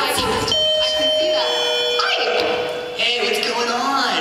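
A two-note doorbell chime, a held high tone stepping down to a lower one, signalling a guest's arrival at the party, with voices around it.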